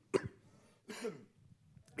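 A short cough, then a quieter throat clearing about a second later.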